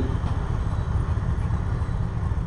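Low, steady rumble of a pulling vehicle's engine running at idle near the sled.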